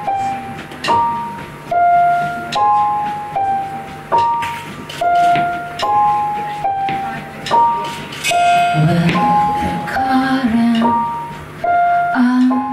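Electric keyboard playing a slow, repeating figure of single high notes, each struck sharply and fading, about one note a second. Lower notes join in about two-thirds of the way through.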